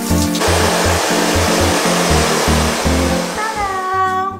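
Handheld shower head spraying water onto hair, rinsing out hair-colour shampoo: a steady hiss that starts about half a second in and fades near the end, over background music with a repeating bass line. A pitched 'ta-da' sounds just before the end.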